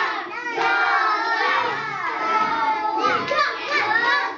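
Many young children's voices calling out and talking over each other at once, a continuous overlapping clamour of a classroom full of kids.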